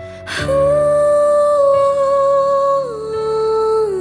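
Music from an acoustic cover song: a singer holds a long wordless note, hummed or sung on a vowel, over soft accompaniment. The note steps down in pitch about three seconds in, and again near the end.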